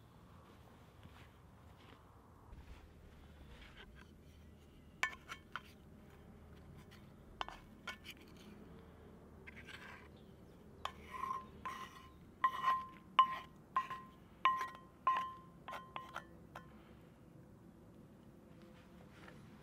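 A wooden spoon knocking mushrooms out of a small cast iron skillet onto a wooden plate: sharp knocks, each with a brief metallic ring from the pan, a few at first, then about two a second and louder in the second half.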